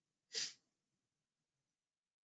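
A single brief burst of breath noise from a person about a third of a second in, against near silence on the call line.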